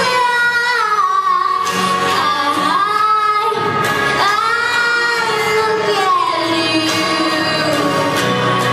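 A young girl singing a song into a handheld microphone, holding long notes and sliding between pitches.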